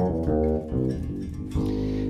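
Synthesized fretless bass sound, played from a guitar through an AXON guitar-to-MIDI converter. It plays a quick line of smooth sustained notes, then one held note near the end.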